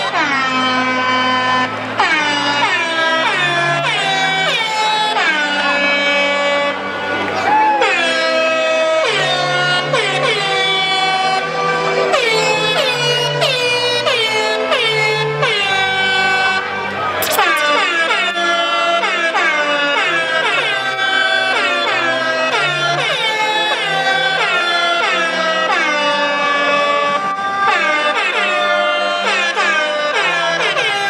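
DJ music played loud over a stage sound system: a track full of repeated horn blasts, each sagging in pitch as it ends, over a bassline.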